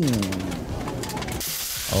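A short falling pitched sound at the very start, then stall noise. About a second and a half in, a steady sizzle cuts in: whole fish frying on a hot flat griddle.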